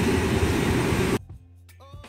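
A loud, steady rushing noise of the airport apron cuts off suddenly about a second in. Quieter background music with held notes follows.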